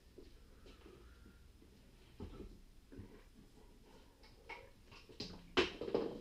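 Faint handling noises as a Ducati 848's fuel tank is lifted off the motorcycle frame: a few light knocks and rustles, then a louder clunk and scrape a little after five seconds as the tank comes free.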